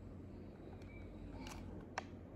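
Quiet room tone with a steady low hum, broken by a couple of faint taps about one and a half seconds in and a sharper click near the end, the handling noise of a small tape-wrapped paper sticker held close to the phone.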